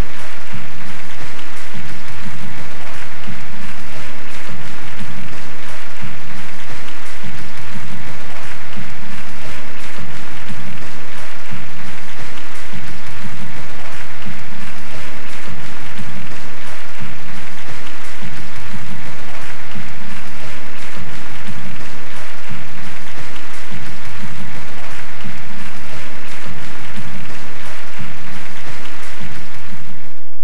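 Sustained audience applause over music with a steady bass beat.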